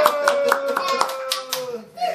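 Hand clapping, about eight quick uneven claps, over a long held "woo" cheer from one voice that slowly falls in pitch and stops just before the end.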